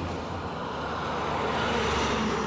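A truck driving past close by, its engine and road noise growing steadily louder.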